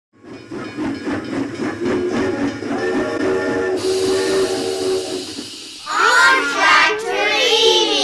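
Cartoon steam-locomotive sound effect: quick, even chuffing, then a steam whistle sounding several notes at once, held for a few seconds, with steam hissing over it. Children's voices come in loudly about six seconds in.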